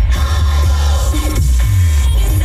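Radio playing electronic music with a heavy, deep bass line and gliding synth or vocal tones, between a station's spoken ID lines.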